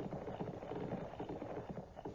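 Faint, rapid, irregular soft tapping or clatter under a low background hiss.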